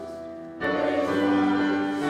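Church music of sustained chords with voices singing, swelling louder on a new chord just over half a second in.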